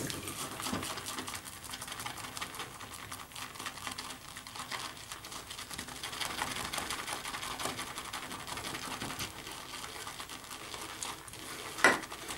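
Large Frank Shave shaving brush whipping soap lather in a ceramic bowl: a steady, rapid wet swishing with fine clicks of bristles against the bowl. The lather is already thick and dry, most of it taken up into the brush.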